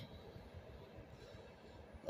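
Near silence: faint, steady background noise with no distinct sounds.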